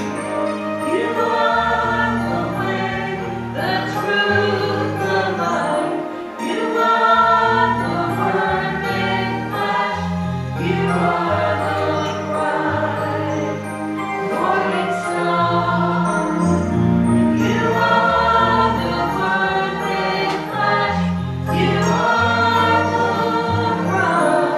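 A small mixed choir of men's and women's voices singing a hymn in harmony, accompanied by an electric keyboard holding long bass notes.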